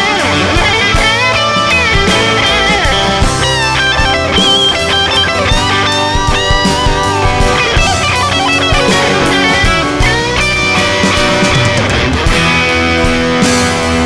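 Rock band playing an instrumental passage, led by an electric guitar solo with bending, sliding lead lines over the band.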